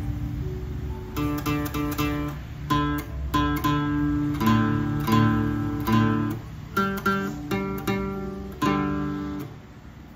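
Acoustic guitar strings plucked one note at a time, starting about a second in: a note fretted at the fifth fret is sounded alternately with the next open string to check by ear whether the two match in pitch while tuning.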